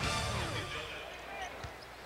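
A TV broadcast's replay music sting ends with a falling sweep in the first half second, leaving quieter arena sound with a basketball bounce on the hardwood about one and a half seconds in.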